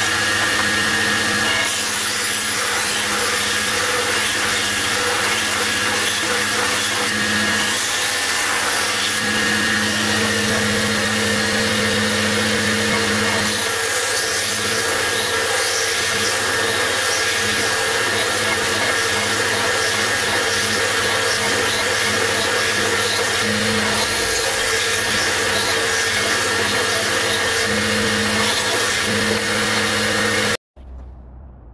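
Belt grinder running steadily while a steel knife blade forged from old railway rail is ground on its belt, the grinding noise swelling and easing as the blade is worked.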